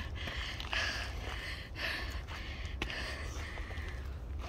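Hard breathing of a hiker climbing steep stone steps, a breath about once a second, with a steady low wind rumble on the microphone.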